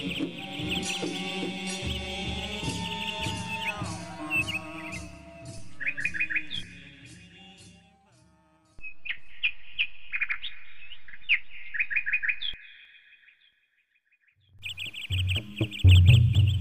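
Music with a steady low beat fades out over the first few seconds. Birds then chirp in quick, repeated calls, broken by two brief near-silent gaps.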